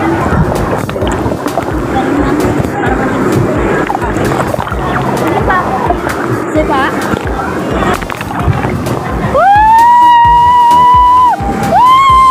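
Rushing, sloshing water and knocking of a body sliding down a waterslide, then about nine seconds in a woman lets out a long high scream that rises and holds for about two seconds, followed by a shorter one near the end.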